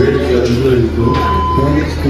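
Voices talking in a restaurant dining room over a steady low hum, with one short steady beep about a second in.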